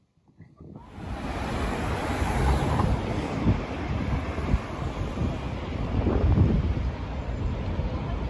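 Wind buffeting the microphone over a steady wash of street traffic noise, starting about a second in after near silence.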